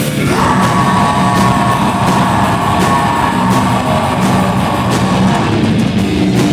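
Live metal band playing loud, with distorted guitars and drums. The vocalist holds one long yelled note from about half a second in until shortly before the end.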